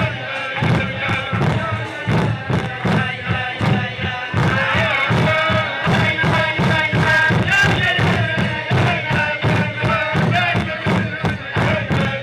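A group of men singing a wordless Chassidic niggun together, with a steady rhythmic beat of thumps about three to four times a second.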